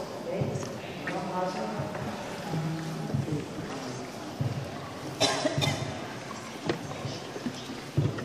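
Indistinct voices inside a cave, with a brief sharp clatter about five seconds in.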